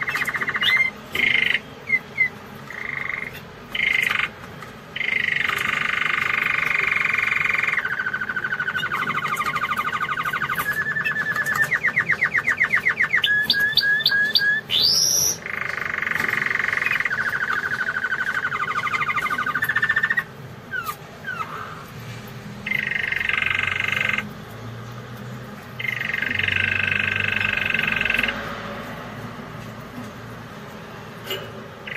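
Domestic canary singing: long rolling phrases of rapidly repeated notes broken by short pauses, with a fast rattling trill and a quick rising whistle about halfway through. The song turns softer and more broken in the last third.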